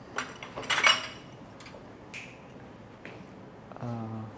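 Wind chime tubes clinking together as the chime is handled, with one louder jangle and brief ringing about a second in.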